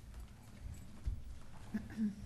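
Faint room noise with a few low thuds and knocks, the strongest about a second in and another near the end.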